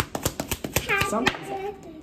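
A deck of tarot cards being shuffled by hand: a quick, irregular run of card clicks and taps that stops a little past the first second.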